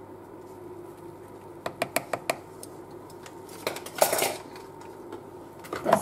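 Light clicks and taps of kitchen utensils on a plastic mixing bowl as a measuring spoon of cinnamon is emptied into batter: a quick cluster of taps about two seconds in and a louder knock about four seconds in.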